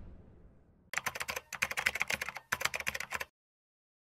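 Keyboard-typing sound effect: three quick runs of rapid key clicks that stop a little over three seconds in.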